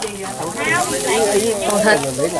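Eels and meat sizzling on a charcoal grill, a steady faint hiss under people talking.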